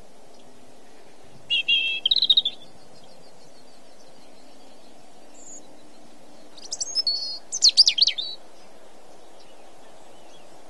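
A small songbird sings two short bursts of quick, varied chirping phrases, about a second and a half in and again about seven seconds in, over a steady low background noise.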